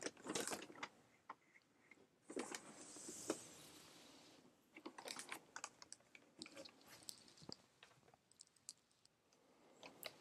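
Faint handling of a gold-paper-covered box: two soft rustling slides as the lid is worked off, then a run of light taps and clicks as the lid is handled and set down.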